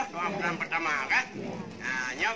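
A man's voice speaking, amplified through a small portable loudspeaker.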